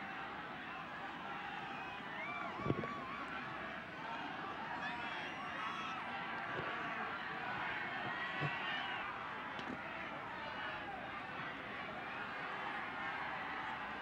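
Crowd of spectators at a rugby league ground: a steady hubbub of many distant voices with scattered calls, and a single thump about three seconds in.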